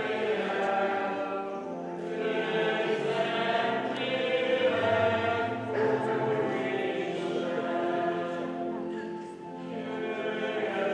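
A choir of several voices singing a church hymn together in long held phrases, with short breaks between them.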